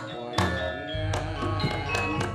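Javanese gamelan music: ringing metallophone tones with repeated sharp drum strokes, and a deep sustained tone coming in about a second in.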